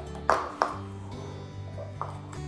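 Soft background music of held notes, with two sharp taps of a plastic funnel and measuring scoop on an amber glass bottle near the start, each ringing briefly, as baking soda is added.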